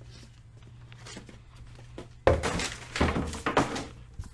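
Small plastic zip bags of LEGO pieces clattering and rustling as they are tipped out of a shipping box and spread on a mat. Faint rustling at first, then a loud burst of rattling from a little past halfway in.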